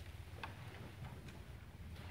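Quiet room tone with a low hum and a few faint, scattered clicks.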